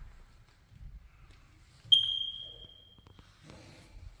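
A smoke detector chirps once about two seconds in: a single sharp, high beep that rings out and fades over about a second in the bare room. Soft footsteps sound on the hardwood floor around it.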